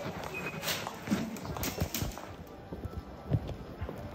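Footsteps on a hard floor: a few irregular knocks a second.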